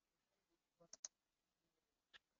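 Near silence, broken by two faint short clicks close together about a second in.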